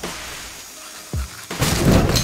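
Background music with one deep drum hit a little after a second in; about one and a half seconds in, a bathroom basin tap starts to hiss as water runs into the sink.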